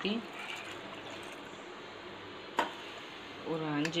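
Water poured into a pressure cooker pot onto a bed of green gram, a faint, even pour, with a single sharp knock about two and a half seconds in.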